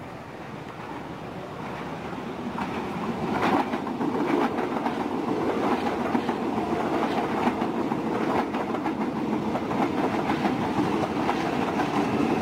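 KfW i9000 electric commuter train (KRL) approaching and passing close by. It grows louder over the first few seconds, then gives a steady rumble of steel wheels on rails with scattered clicks over the rail joints.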